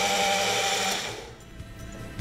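Small electric mixer-grinder run in one short pulse, its motor whirring steadily while it blends a coriander-mint drink with fizzy water, then cutting off about a second in.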